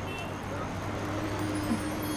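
Steady outdoor street ambience, like distant traffic: a low hum under an even noise haze. A faint held tone comes in about half a second in.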